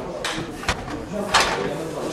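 Loaded barbell lifted off the squat rack's hooks: a sharp metal clack about two-thirds of a second in, then a louder rattle of bar and plates as it is walked out, over a murmur of voices.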